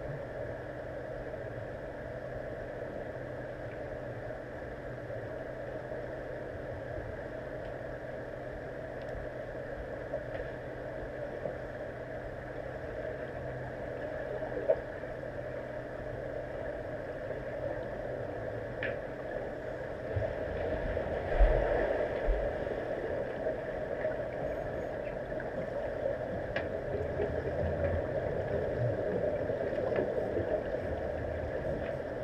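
Steady underwater drone in a swimming pool, recorded through an underwater camera's housing. There are a few scattered clicks, and a cluster of low thumps about two-thirds of the way through, as swimmers stir the water.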